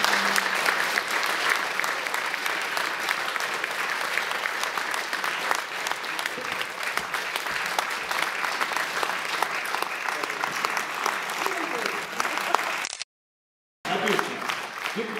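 Audience applauding in a theatre hall, a dense, steady clatter of many hands clapping that breaks off abruptly for about a second near the end.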